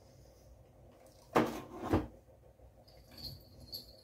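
A cardboard box being handled and set down: two short, soft knocks about one and a half and two seconds in, then a couple of faint ticks near the end.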